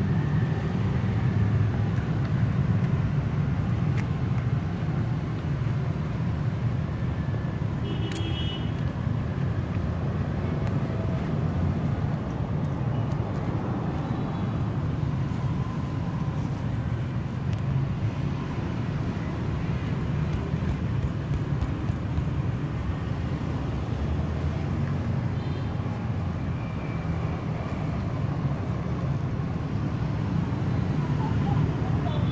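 Steady low rumble of road traffic, with a short high-pitched beep about eight seconds in.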